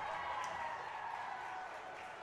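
Faint crowd cheering and applause in an ice rink for a goal, slowly fading away.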